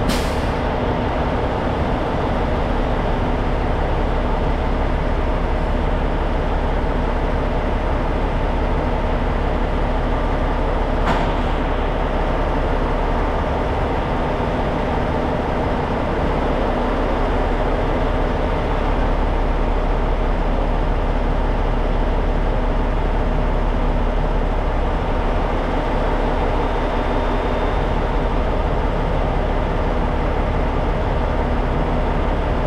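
Steady, loud drone of heavy machinery running, with a short click about eleven seconds in.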